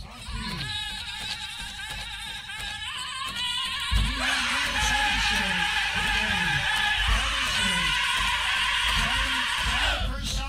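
Powwow-style drum and singing for a fringed-shawl dance: a steady drum beat with chanted voices that slide down in pitch, getting much louder about four seconds in.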